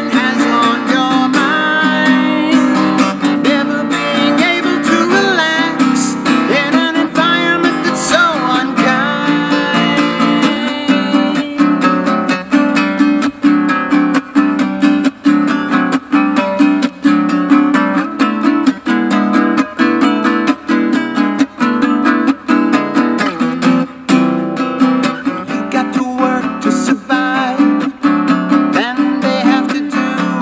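Acoustic piccolo bass guitar played in a steady plucked pattern, with a man singing over it for about the first ten seconds, then the instrument carrying on mostly alone.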